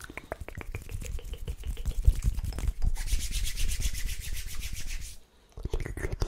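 Close-miked ASMR mouth sounds: quick wet clicks and pops for about three seconds, then about two seconds of fast, even rubbing strokes right at the microphone. The rubbing cuts off suddenly, there is a short silence, and the clicks resume near the end.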